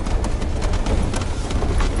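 Mercedes G500 heard from inside the cabin driving over a rough, rocky gravel track: a steady low rumble with many irregular clicks and knocks from stones under the tyres and body.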